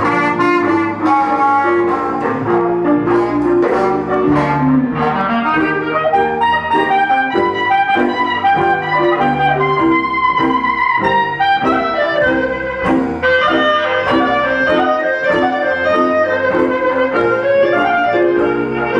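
Live traditional New Orleans jazz band playing: trombone at the start, then the clarinet carries the lead line over double bass and drums.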